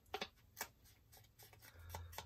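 Faint dabbing and brushing of a foam ink blending tool against the edges of a small paper piece, with light paper handling: a few short, soft strokes.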